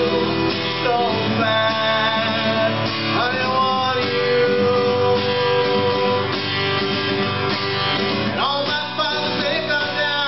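Strummed acoustic guitar with a harmonica played in a neck rack, sounding long held notes with a few bends.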